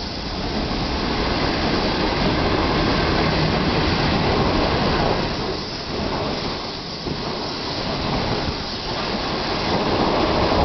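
25Z passenger coaches of a diesel-hauled intercity train rolling past close by: a steady rush and rumble of wheels on rails, easing a little a few times in the second half.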